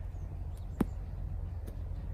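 Outdoor background with a steady low rumble and a single sharp click a little under a second in.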